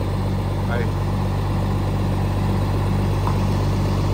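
An old Scania cab-over truck's diesel engine idling steadily.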